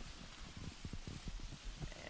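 Faint rustling of tall marsh grass being parted by hand, with a run of soft, low bumps.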